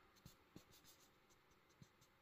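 Near silence: faint room tone with a few soft ticks and scrapes from a fingertip moving on a printed paper page.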